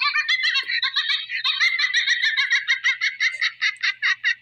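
A woman's high-pitched, squealing giggle, a quick run of about five or six short pulses a second kept up without a break.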